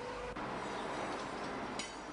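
Steady background noise of a railway workshop, with a brief high hiss near the end.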